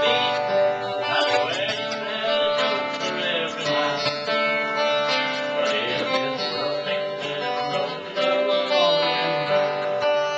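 Acoustic guitar played live, with a man singing along into the microphone.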